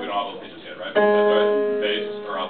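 A piano chord struck about a second in and left to ring, fading slowly. Before it, a sung chord cuts off and there are a few brief voices.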